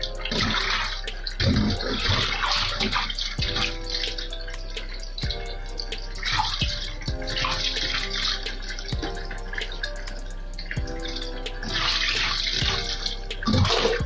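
Kitchen tap running a weak, thin stream into a stainless-steel basin in a steel sink, with repeated surges of splashing as dishes are rinsed by hand and a few light knocks of ware against the basin.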